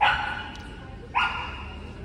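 A dog barking twice, about a second apart, each bark ringing on briefly in a large echoing hall.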